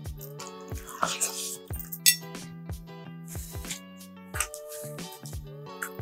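Background music with sustained notes, over a few short clicks and a bright clink about two seconds in.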